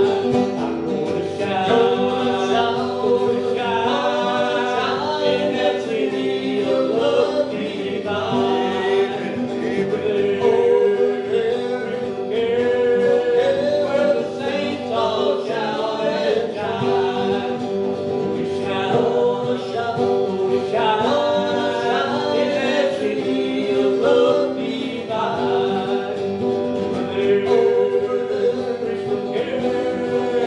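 A gospel hymn sung with acoustic and electric guitar accompaniment, the singing and playing continuous throughout.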